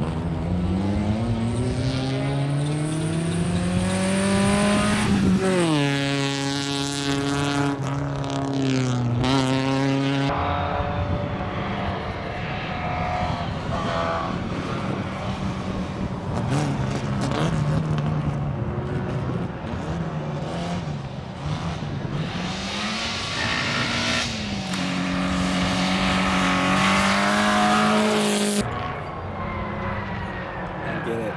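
Rally car engines under hard acceleration as the cars race past, pitch climbing through the revs and dropping at gear shifts. The sound changes abruptly about ten seconds in and again near the end as one pass gives way to another.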